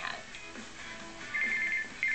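A telephone ringing: a rapid electronic two-tone trill that starts about one and a half seconds in, pauses briefly, and starts again at the end. It is an incoming call, answered shortly after with "Hello?".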